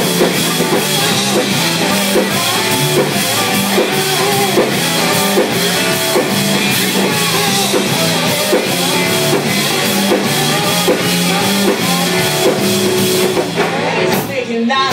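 Live rock band playing an instrumental passage: a drum kit keeps a steady beat under electric guitar and bass guitar.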